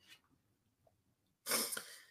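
A man's short cough about one and a half seconds in.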